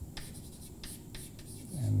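Chalk writing on a blackboard: a quick run of short taps and scrapes as symbols are written.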